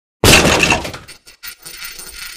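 Shattering sound effect: a sudden loud smash like breaking glass about a quarter-second in, ringing away over most of a second, followed by a few small clicks and a lighter metallic rattle.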